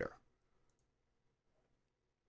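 The end of a spoken word, then near silence: room tone, with one or two faint clicks under a second in.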